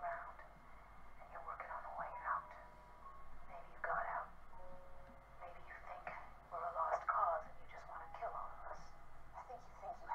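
Dialogue from a TV drama episode playing from a speaker, thin and tinny, with quiet background music under the voices.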